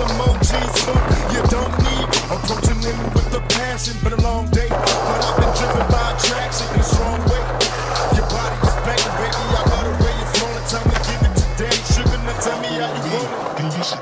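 Hip-hop backing track with a heavy bass beat, mixed with skateboard wheels rolling on smooth concrete and the clacks of the board. The bass drops out about twelve seconds in.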